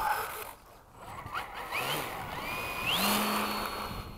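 Electric brushless motor and propeller of a Dynam Gee Bee RC model plane spooling up for takeoff: a whine that rises sharply about two and a half seconds in, then holds at full throttle.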